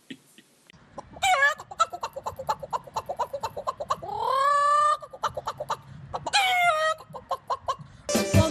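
Rapid chicken-like clucking, several clucks a second, broken by three squawking calls: a short one about a second in, a long one that rises and then holds near the middle, and another late on.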